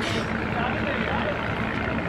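Engine of a rail trial unit running steadily as it rolls slowly past, with onlookers' voices over it.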